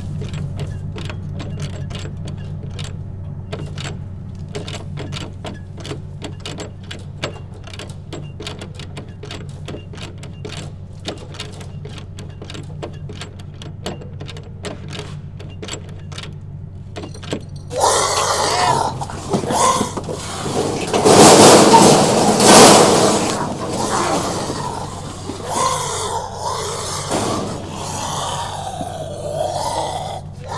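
A steady low drone with scattered sharp crackling clicks. A little past halfway a loud, harsh struggle breaks in, with rough vocal cries, at its loudest a few seconds later: a zombie attack.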